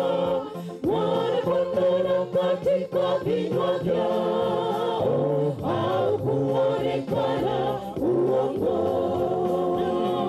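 Mixed choir of women and men singing a gospel hymn in harmony, holding long notes, with a short break between phrases about a second in.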